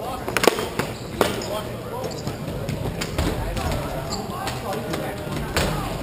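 Hockey sticks clacking against each other and the hard rink floor during play: a sharp clack about half a second in, another just after a second and one near the end, with players' voices calling in between.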